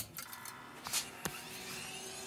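An HP 1660C logic analyzer being switched on. A sharp click of the power switch comes first, then its motors spin up with a faint whine that rises in pitch, with a couple of small ticks along the way.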